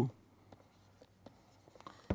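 Faint, sparse taps and scratches of a stylus writing on a tablet, over a low steady hum.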